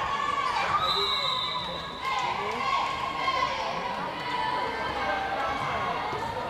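High-pitched girls' voices calling and cheering in long, held shouts, with the thuds of a volleyball being hit during a rally.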